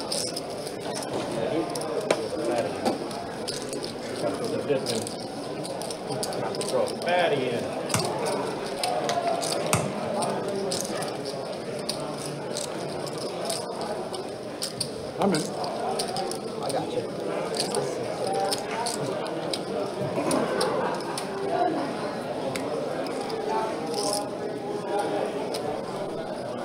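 Card-room ambience: low murmured chatter around the table, with scattered sharp clicks and clinks of clay poker chips being handled and stacked.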